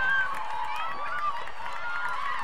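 Several women players shouting and calling to each other on an outdoor soccer field, overlapping calls without clear words.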